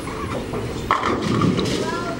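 Bowling alley sound: a bowling ball rolling down the lane, with a sharp clatter about a second in and people talking in the background.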